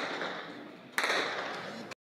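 Two sudden bangs about a second apart, each trailing off in a noisy hiss that fades over nearly a second.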